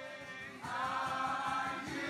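A group of people singing a worship song together, coming in strongly about half a second in with long held notes.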